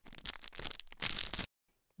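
Thin polythene sleeve crinkling and rustling as it is opened and pulled off a notebook, louder about a second in, then cut off abruptly.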